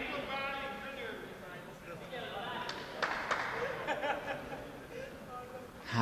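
Players' voices calling out in a large sports hall during indoor five-a-side football, with a short knock about three seconds in.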